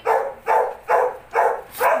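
A dog barking repeatedly: five short barks in quick succession.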